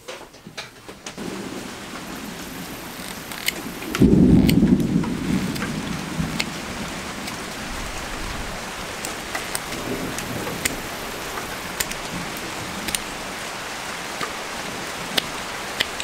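Steady rain with a low rumble of thunder about four seconds in, and scattered sharp ticks through the downpour.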